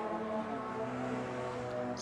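A vehicle engine running at steady revs, a low, even hum with several tones.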